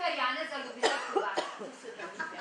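A voice speaking briefly, then three short coughs about a second in.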